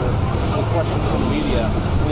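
A man speaking over a steady low engine hum on an airport tarmac.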